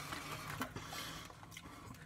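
Faint rustling of a kettle-cooked potato chip bag as a chip is picked out of it, with a few soft ticks.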